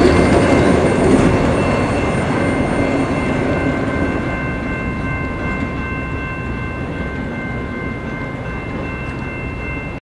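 Freight train cars (autoracks and container well cars) rolling past on the rails. The rumble fades steadily as the end of the train moves away, with steady high-pitched tones held above it.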